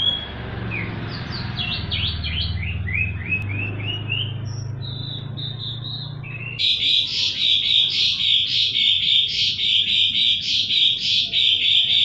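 Birds chirping: quick falling chirps in the first few seconds over a low steady hum, then, from about halfway, a dense rapid run of chirping as the hum stops.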